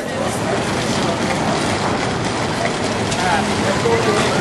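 Steady rushing outdoor noise with faint voices of people talking, a little clearer about three seconds in.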